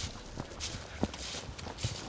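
Hiker's footsteps on thin, thawing snow over a forest track: a few faint, irregular steps.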